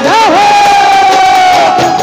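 A man's voice over the PA giving one long, loud call: a quick up-and-down swoop, then a single high note held for more than a second before it trails off.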